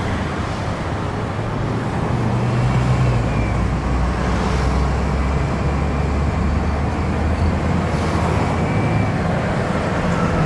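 Steady road and engine rumble heard from inside a moving car's cabin, growing a little louder a few seconds in.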